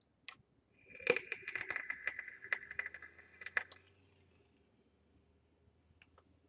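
Vape atomizer with parallel Clapton coils at 0.26 ohm, fired at 105 watts: e-liquid sizzling and crackling on the hot coils with a hiss of drawn air, starting about a second in and lasting about three seconds.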